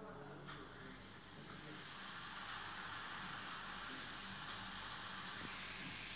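Baking soda and vinegar fizzing as the mixture foams up, a faint steady hiss that builds over the first two seconds or so and then holds.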